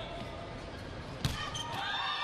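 Arena background noise, then one sharp smack of a volleyball being hit during a rally about a second and a quarter in, followed by faint high squeaks.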